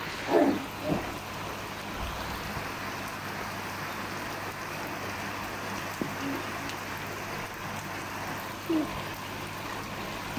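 Steady rain falling on a swimming pool's water and the surrounding patio and garden, an even hiss that holds throughout.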